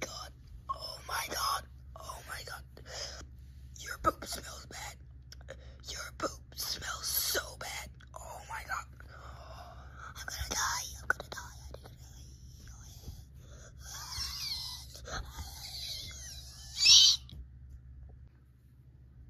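A person's voice making breathy, whispery and wailing noises in short bursts, with pitch gliding up and down near the end. It ends in a loud, high-pitched squeal about a second before the end.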